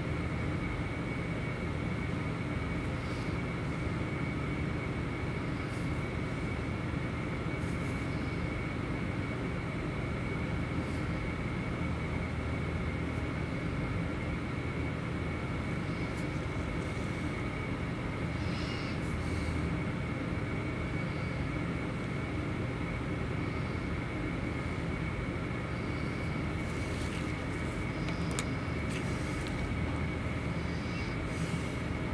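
A steady, even droning hum with a thin high whine running through it, like a fan or room machinery. There are faint small clicks now and then, more of them near the end.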